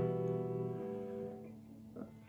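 Electric guitar (Squier Bullet Mustang through an Orange Micro Dark amp) letting an E minor chord ring out and fade steadily, ending with a light pick click.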